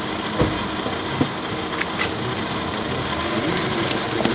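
A car engine idling steadily, with a few light clicks over it.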